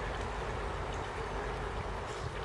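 Steady low outdoor background noise with no distinct events: an even rumble and hiss.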